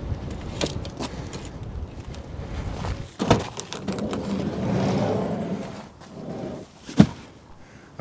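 A van door being worked: a latch click a little after three seconds, a smooth rolling rush for about two seconds, then one sharp clack about seven seconds in.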